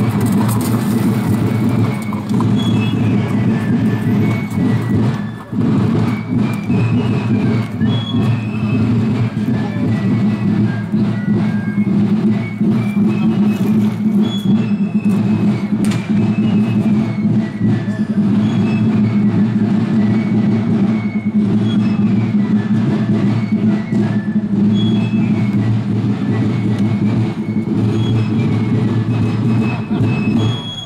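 Drums and fifes playing a march: a high piping melody over a continuous drum rumble.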